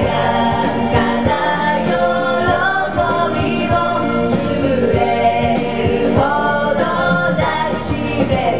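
Karaoke: several women singing together into handheld microphones over a backing track with a steady beat.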